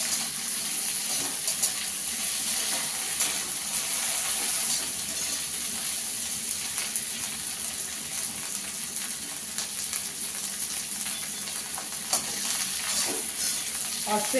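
Chopped vegetables sizzling steadily in hot oil as they are stir-fried in a metal kadhai, with occasional clicks and scrapes of a slotted spatula against the pan.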